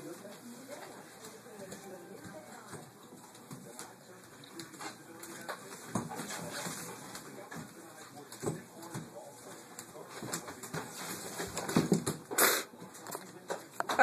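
A dog being dragged across a tile floor in a game of tug of war: faint scuffs, slides and claw clicks on the tiles, with one louder sharp knock near the end.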